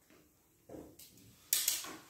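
Quiet room with light handling noise: a faint click about a second in, then a short rustle about a second and a half in.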